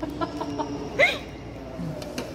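A woman's brief, sharp vocal outburst about halfway through, its pitch sliding upward, as she reacts to a nasal swab. A low steady hum lies underneath.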